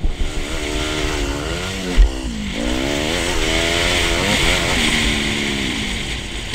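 Yamaha WR250R's 250 cc single-cylinder four-stroke engine revving up and down under way, its pitch rising and falling with the throttle. About two seconds in there is a thump, after which the revs drop and then climb again.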